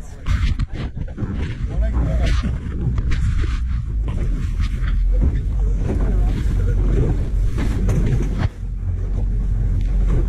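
Handling noise on a covered action camera: muffled rubbing and knocking against the microphone, over a steady low rumble of the boat's motor. Faint voices come through in the background.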